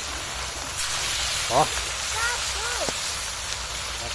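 Fish deep-frying in a wok of hot oil, a steady sizzle of bubbling oil.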